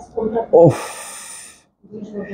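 A man's short voiced sounds, then a breathy exhale lasting most of a second that fades out.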